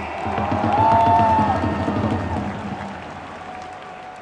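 Stadium crowd applauding and cheering, with music playing. The sound swells about a second in and then fades.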